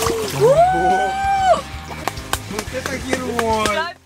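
A person's long, high cry that rises and then holds for about a second while lowering into cold lake water through the plunge hole, with water splashing and sloshing. A second, falling cry comes near the end.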